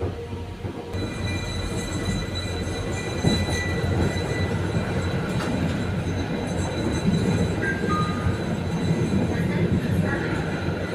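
Interior of a Pesa-modernised Konstal 805Na tram pulling away from a stop. Its running rumble grows louder from about a second in, with thin steady high whining tones over it and a couple of brief squeaks near the end.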